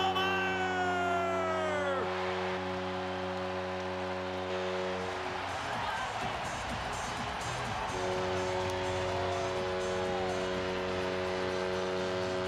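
Hockey arena goal celebration: a long, steady horn chord sounds over a cheering crowd. The chord breaks off about five seconds in and starts again near eight seconds.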